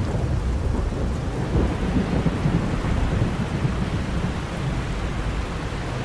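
Thunderstorm: steady rain with a low rumble of thunder underneath.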